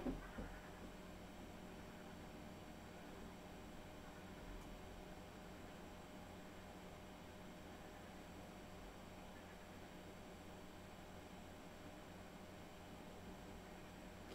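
iXsystems TrueNAS Mini X+ NAS booting, its cooling fan running at maximum during drive spin-up: a faint, steady whir.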